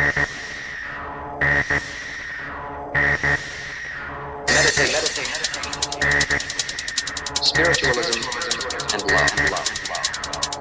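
Hard NRG trance music from a DJ mix: a sparse passage with a heavy accented hit about every second and a half over a held synth tone, then about four and a half seconds in the full beat comes in with rapid hi-hats.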